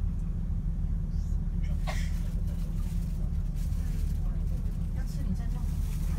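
Steady low engine and road rumble inside a moving bus cabin, with a short clatter about two seconds in.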